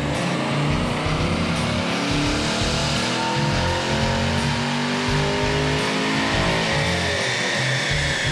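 2016 Camaro SS's 6.2-litre LT1 V8 making a stock baseline pull on a chassis dyno: the engine note climbs steadily in pitch for about six seconds, then drops away near the end as the throttle is released. Music plays underneath.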